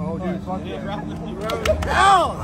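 Excited men's voices whooping and laughing in celebration, with a few sharp smacks, like back slaps during a hug, about a second and a half in. A steady low hum runs underneath.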